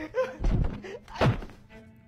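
Music playing, with a low thud about half a second in and a louder, sharper thunk just after one second, as a person drops onto a wooden floor.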